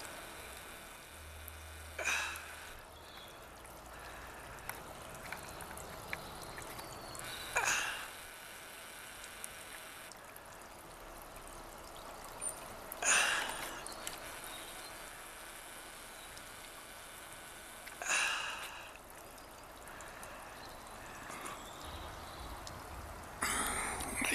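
A person breathing close to the microphone: four breaths spaced about five seconds apart, each lasting under a second, over a faint steady background hiss.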